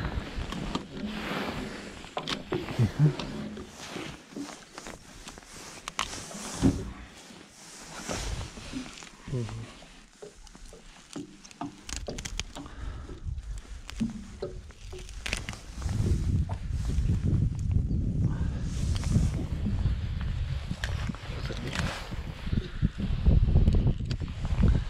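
Nylon monofilament gill net rustling and crackling, with small knocks and clicks, as hands pull it apart to free a netted fish. From about halfway a low rumble of wind on the microphone comes in.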